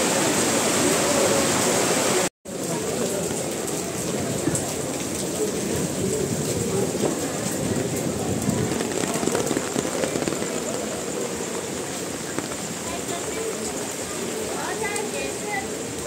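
Heavy rain falling on wet pavement and awnings, a steady hiss. It cuts off abruptly a little over two seconds in and comes back slightly quieter, with voices talking over it.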